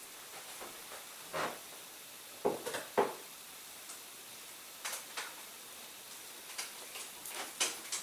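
Scattered soft rustles and light taps of hands working a thin rubber strip and small parts at a wooden table, about a dozen brief handling noises with quiet between them.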